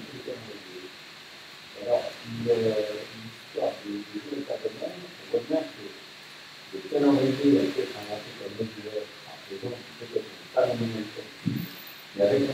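A man speaking into a lectern microphone in a small room, in phrases with short pauses.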